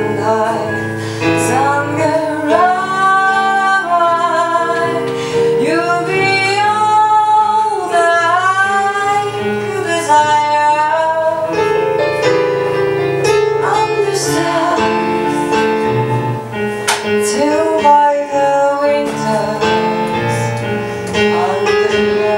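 A woman sings live into a microphone over sustained electronic keyboard chords, holding long notes with a wavering vibrato.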